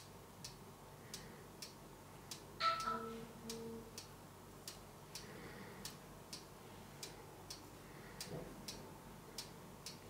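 A clock ticking faintly and evenly, about two ticks a second. About three seconds in comes one brief louder sound carrying a short two-part tone.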